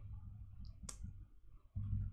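A single faint, sharp click of a computer mouse about a second in, over a low steady room hum.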